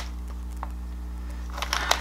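Steady low hum of room tone, with a few faint short rustles or sniffs near the end.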